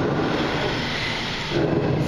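A long exhale, a rush of breath that lasts about a second and a half.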